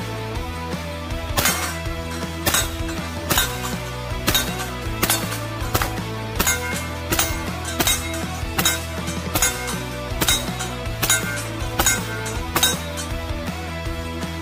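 A string of about fifteen shots from a Glock-based pistol-calibre carbine, roughly one every three-quarters of a second, each hit on the steel target ringing with a clink. Rock guitar music plays underneath throughout.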